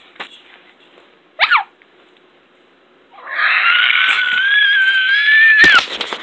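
A cat giving a short falling squeal about a second and a half in, then a loud, long yowl of about two and a half seconds held at one steady pitch, the distressed cry of a cat being pestered. It ends abruptly with a sharp knock.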